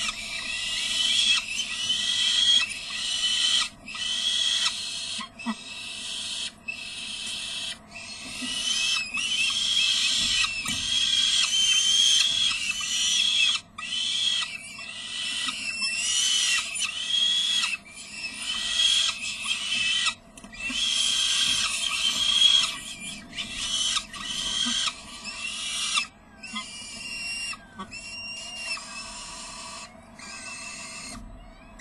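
Peregrine falcon chicks giving high, harsh begging calls while the adult feeds them. The calls come over and over in runs of about a second, separated by short gaps.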